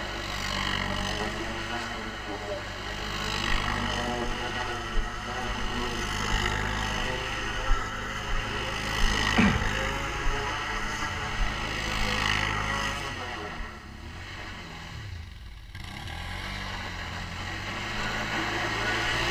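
Quad bike (ATV) engine running steadily while riding, with a few sharp knocks along the way; it eases off and quietens about three-quarters of the way through.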